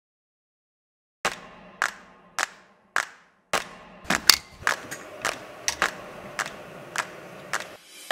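A run of sharp clicks, each with a short fading tail, starting about a second in at roughly one every half second and coming closer together toward the end, over a faint steady hum.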